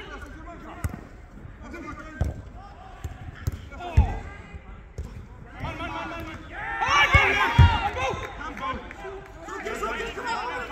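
A few dull thuds of a football being kicked during play on an artificial-turf pitch, the sharpest about four seconds in. Men's shouts and calls from the players, loudest around seven seconds in.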